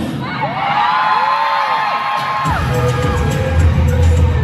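Live pop dance track played loud over the stage sound system, its bass beat dropping out for a couple of seconds and coming back in about two and a half seconds in. Fans scream and cheer over the music.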